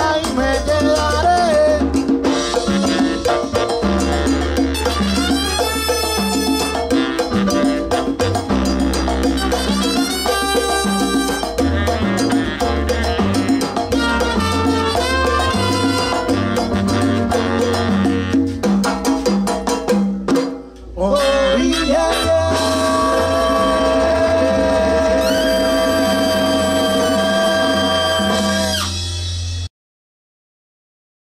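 Live salsa orchestra playing an instrumental passage with percussion. After a brief break about two-thirds of the way through, the band holds a long sustained chord, and the sound cuts off abruptly just before the end.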